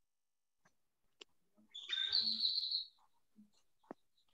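A high bird-like chirping call lasting about a second, picked up over a video-call connection, with a sharp click shortly before it and another near the end.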